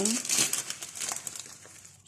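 Plastic bag of vermicelli crinkling as it is picked up and handled, fading out near the end.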